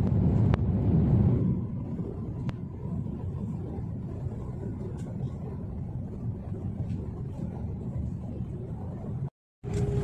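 Jet airliner heard from inside the cabin as it lands: a loud low rumble, strongest for the first second and a half, then settling to a steady lower rumble as the plane rolls out on the runway.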